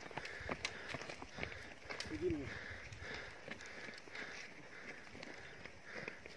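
Irregular footsteps crunching on loose gravel, with a short voice call about two seconds in.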